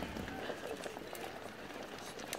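A crowd walking on a paved path: many irregular footsteps with indistinct voices of people talking among themselves.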